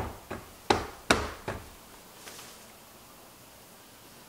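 Soap-filled silicone loaf mold knocked down against the table: five sharp knocks about 0.4 s apart, stopping about a second and a half in, with one faint tap later.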